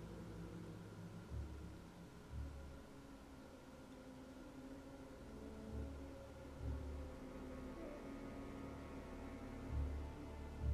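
Faint background music with sustained notes, under which a few soft low thuds come in pairs.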